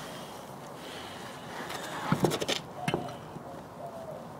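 Steel wheel rim knocking and clinking lightly against the wheel studs as a heavy wheel and tire is worked onto the hub, with a few scattered knocks in the second half.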